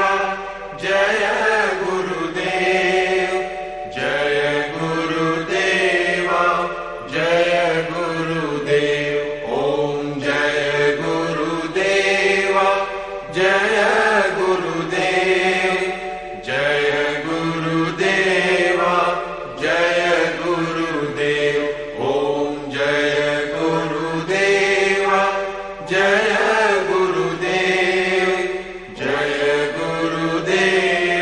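A voice chanting Sanskrit verses in a melodic recitation, in short phrases with brief breaks between them.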